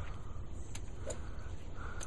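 Low, fluctuating rumble of wind on the microphone, with a couple of faint short sounds about a second in.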